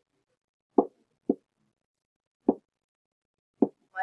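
Four short, dull knocks of a stylus striking a writing surface as an expression is handwritten, spaced unevenly about a second apart.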